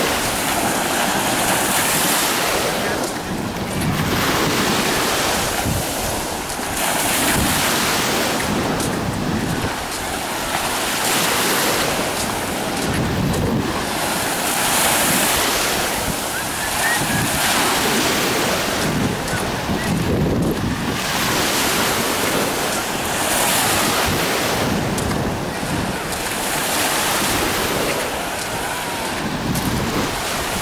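Small waves breaking and washing up on a sandy shore, the surf swelling and easing every few seconds. Wind buffets the microphone.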